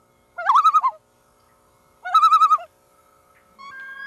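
Two short animal calls, each about half a second long, with a wavering, warbling pitch, the first about half a second in and the second about two seconds in. A faint steady tone sits underneath, and a held tone comes in near the end.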